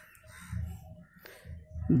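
A crow cawing faintly a few times in the background, with a brief click about a second in; a man's voice starts at the very end.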